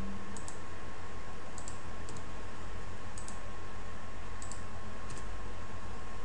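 Clicks of a computer mouse and keyboard, about six short clicks, mostly in close pairs, spread over a few seconds. Under them runs a steady hiss and hum of the recording setup.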